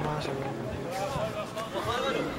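Faint voices calling out and talking, weaker than the loud shout just before, over light outdoor background noise.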